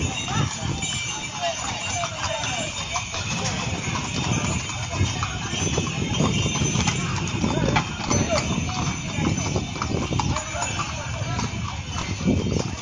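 Several horses' hooves clip-clopping at a walk on a stone-paved street, many irregular strikes overlapping, with people talking around them.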